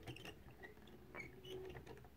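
Faint clicking and small squeaks from a hand-cranked driftwood automaton, its wooden eccentric cams turning on a wire shaft with a counterbalance bringing the parts back each revolution.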